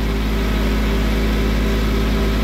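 Compact tractor engine running at a steady speed as the tractor moves slowly forward, with an even, unchanging drone.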